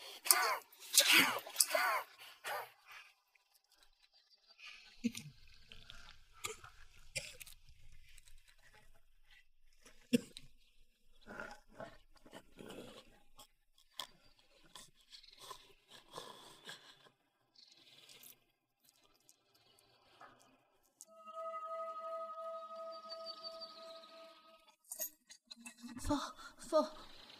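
Strained, pained cries and grunts from a man for the first few seconds, then sparse crunching and knocking struggle sound effects, and a steady held tone for about four seconds near the end.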